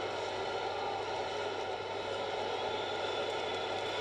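Steady background noise, a hiss-like haze with a low hum underneath, unchanging throughout and with no speech.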